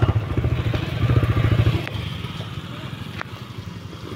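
Small motorcycle engine running with a rapid, even low putter that fades about halfway through as the bike moves off; two faint clicks follow.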